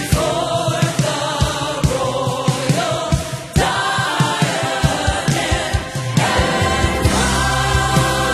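Gospel choir singing with a live band: trumpet, drums keeping a steady beat, and sustained low bass notes entering near the end.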